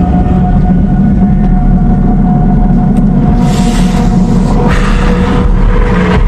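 Vehicle engines running with a steady low rumble, with two louder surges about halfway through.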